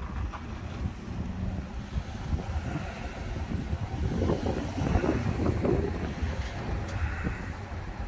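A police SUV drives up across a parking lot and pulls to a stop close by. Its engine and tyres are loudest about four to six seconds in, with wind buffeting the microphone throughout.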